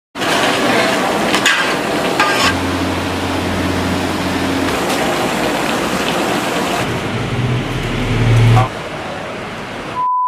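Kitchen noise of meat curry cooking in large pots: a steady sizzling hiss, with faint voices and a low hum in the background. It drops away a little before the end.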